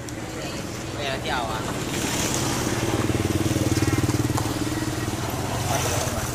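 A motorcycle engine passing on the street, growing louder to a peak about four seconds in and then fading, with brief voices in the background.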